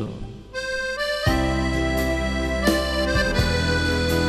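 A live keyboard and guitar duo start an instrumental tune. A single held keyboard note comes in about half a second in, and full sustained chords with a bass line join a little after a second.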